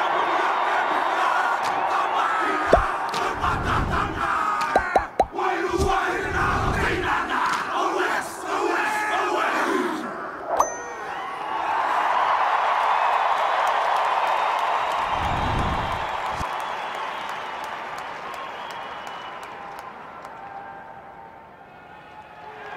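A haka chanted and shouted in unison by a rugby team over a stadium crowd, with a few deep thuds. The crowd noise swells again about halfway through, then fades near the end.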